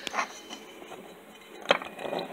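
Steady low background noise of a shop with light handling noise, and one sharp click near the end.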